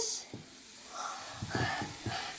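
L.O.L. Surprise Pearl fizzing clamshell starting to dissolve in a glass bowl of water: a faint fizzing hiss with a few small crackles, growing a little about a second in.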